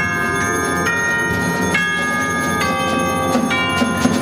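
A percussion ensemble playing a slow, ringing melodic passage on tubular bells and other tuned mallet percussion, a new bell-like note struck every half second to a second, each ringing on. A low, steady rumble sits underneath.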